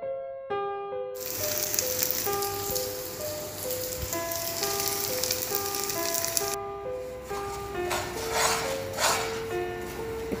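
Gentle piano music over hot oil sizzling steadily under glutinous rice patties frying in a pan. The sizzle starts about a second in and cuts off sharply after about six and a half seconds. It gives way to a spatula scraping in a few strokes as it stirs brown sugar syrup in the pan.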